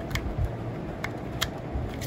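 Small plastic clicks and handling noise as a power cable's plug is pushed into the socket of a hexagonal plastic modular LED lamp panel: about four short clicks over two seconds.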